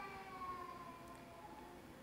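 A faint whine of several tones that slowly fall in pitch and fade out near the end.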